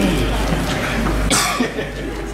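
A single short cough about a second and a half in, over a low murmur of room noise.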